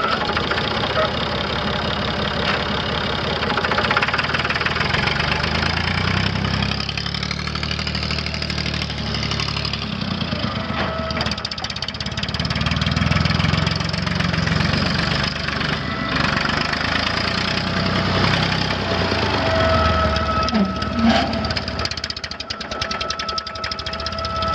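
Massey Ferguson 250's three-cylinder Perkins diesel engine running just after start-up, its engine speed rising and falling a few times. A thin steady whine joins in near the end.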